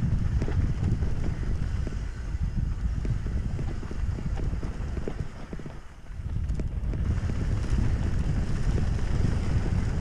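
Wind buffeting the microphone over the rumble and rattle of a hardtail mountain bike rolling fast down a rough dirt trail, with many small knocks from bumps and roots. It drops off briefly about six seconds in, then picks up again.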